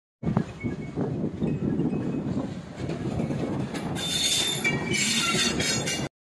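Diesel-hauled passenger train rolling past, its wheels rumbling over the rails. From about four seconds in, the wheels squeal with thin high-pitched tones over the rumble.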